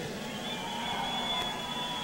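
Arena crowd noise, a low steady haze with a faint held tone running through it.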